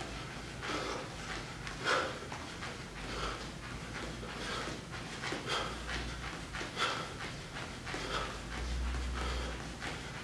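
A man panting hard during a fast-feet footwork drill, with his shoes tapping and scuffing on the floor in an irregular quick rhythm.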